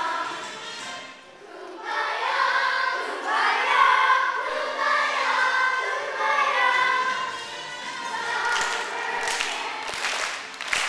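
A group of children singing a song together, dropping off briefly about a second in and then picking up again. Sharp claps come in near the end.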